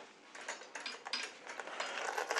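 Geared-down manual chain hoist worked by hand: faint, irregular clicking and rattling of the steel hand chain and its ratchet mechanism as the chain is handled.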